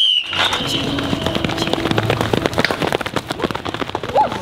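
Several sprinters driving out of starting blocks, their feet striking the rubber track in a rapid run of sharp footfalls. A short high whistle-like tone sounds right at the start, as the start signal.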